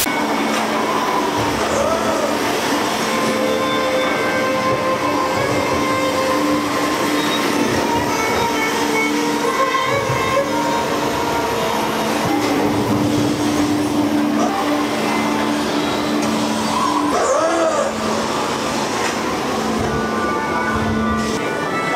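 Dark ambient soundtrack of a haunted attraction: sustained low drone tones over a steady rushing, rumbling noise bed, with a few tones that rise and fall.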